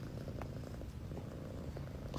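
Domestic cat purring close to the microphone, a steady low rumble.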